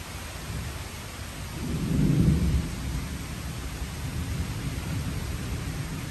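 Steady rain with a low rumble of thunder that builds about a second and a half in, is loudest around two seconds in, then fades back into the rain.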